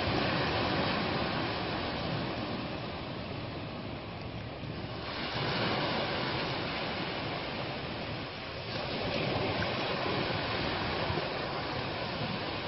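Waves breaking and washing over a rocky shoreline: a steady rush of surf that swells twice, about halfway through and again near the end.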